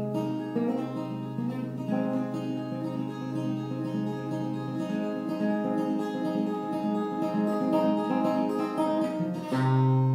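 Acoustic guitar playing a solo instrumental passage of chords, the notes left ringing. A louder chord is struck just before the end.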